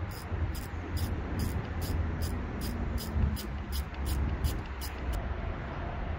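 Ratchet wrench clicking steadily, about two and a half clicks a second for some five seconds, as a 13 mm socket on an extension and flexible joint backs out the last bolt of the poppet valve cover on a Mercury two-stroke outboard.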